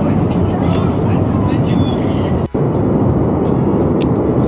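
Wind buffeting the microphone in a steady, loud rush, which cuts out for an instant about halfway through.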